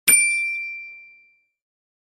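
A single bell-like ding sound effect, struck once, with a clear high ringing tone that fades out over about a second.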